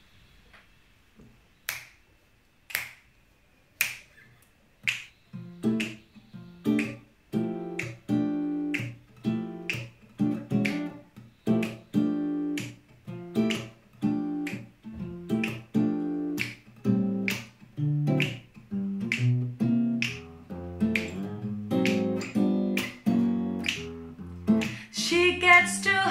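Finger snaps about once a second count in a slow swing beat. About five seconds in, an acoustic guitar joins, playing swing chords on the beat while the snaps carry on. A woman's singing starts right at the end.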